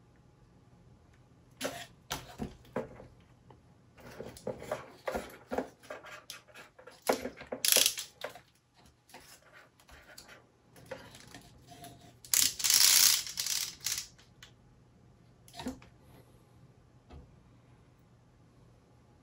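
Wooden model-kit parts being handled: an irregular run of light clicks and knocks as the pieces are turned and set down. There are two louder rustling stretches, a short one about eight seconds in and a longer one about twelve seconds in.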